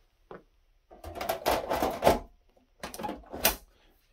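Metal top cover of a Dell PowerEdge R730 server being set on the chassis and slid shut: rattling metal scrapes with a sharp clack about two seconds in and another near the end.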